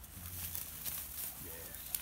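Light rustling and scattered crackles of old bramble canes and grass being handled and pulled out at the base of a wall.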